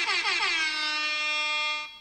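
One long, steady air-horn blast, held on a single note and cutting off near the end.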